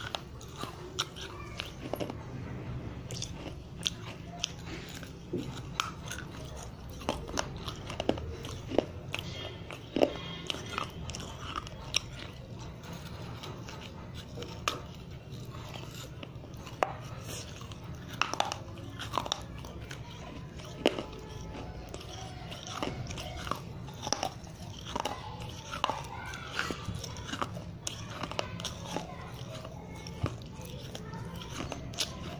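A dry fired-clay diya (terracotta oil lamp) being bitten and chewed, with many sharp, irregular crunches over a low steady hum.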